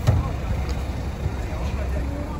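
Coach bus diesel engine idling with a steady low rumble, with one sharp knock right at the start and faint voices in the background.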